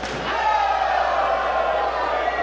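A wrestling strike landing in the corner, a single slam at the very start, followed by a long held vocal cry that falls slightly in pitch.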